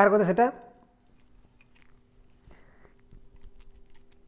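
A man's voice ends a word in the first half-second, then faint scattered clicks and a brief hiss over a steady low electrical hum.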